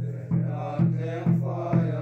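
A group singing a hymn over a steady drum beat of about two strokes a second.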